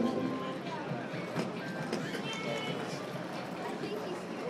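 Quad roller skates rolling on a wooden rink floor as racers pass, a steady rolling wash with scattered clacks from their strides.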